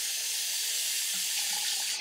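Tap water running steadily into a bathroom sink.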